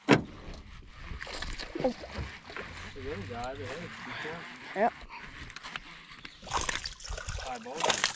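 A hooked smallmouth bass splashing and thrashing at the water's surface as it is brought to a landing net, in a run of splashes over the last second or two. A single sharp knock sounds right at the start.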